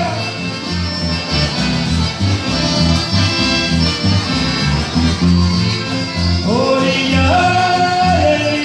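Latin American band music in chamamé style: an accordion-led melody over a pulsing bass line, with a singing voice coming back in near the end.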